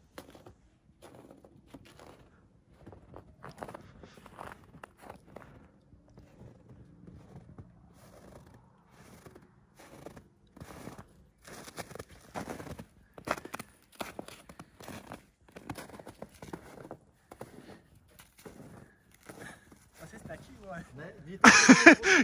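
Footsteps crunching through snow, picked up close to the boots, in an uneven run of steps. A loud voice breaks in just before the end.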